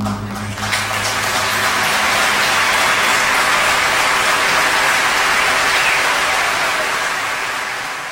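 A large concert audience applauding at the end of a song, the applause building over the first second, holding steady, and fading near the end.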